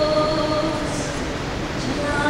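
Rondalla ensemble of acoustic guitars and a double bass playing, with a woman's voice holding one long note that fades out about a second in.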